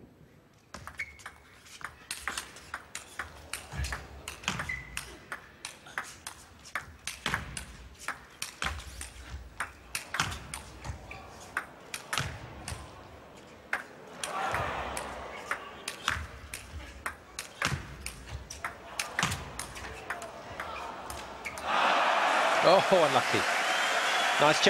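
A long table tennis rally: the celluloid ball clicks off bats and table in quick strokes for about twenty seconds, with a crowd reaction partway through. When the point ends near the end, the arena crowd breaks into cheering and applause.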